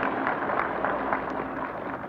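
Crowd applauding and dying away after a line of the speech, heard on an old vinyl record of the broadcast.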